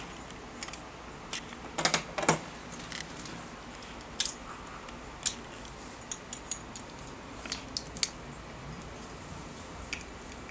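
Small plastic Lego bricks clicking and clattering now and then as a child handles them, with a louder cluster of clacks about two seconds in.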